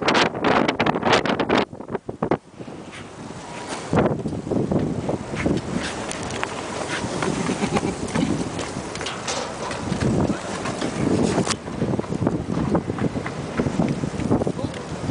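Sandstorm wind gusting hard against the microphone, dropping away briefly about two seconds in before picking up again.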